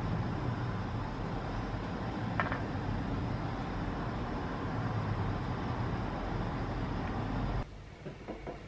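Steady low rumble and hiss of background noise, with one faint click about two and a half seconds in; it cuts off abruptly shortly before the end.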